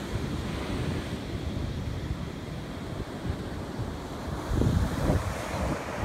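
Ocean surf breaking on a beach, with wind buffeting the microphone. There is a louder low gust of wind rumble about four and a half seconds in.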